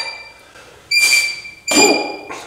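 Iron weight plates clinking against the sleeves of EZ curl bars as the loaded bars are curled up. There are sharp metallic clinks about a second in and again near the end, each ringing on briefly at a bright, steady pitch.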